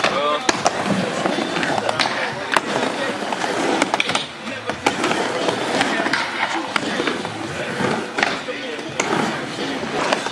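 Skateboard riding a plywood mini ramp: wheels rolling with a steady rumble, broken by many sharp clacks as the board and trucks strike the ramp and its coping.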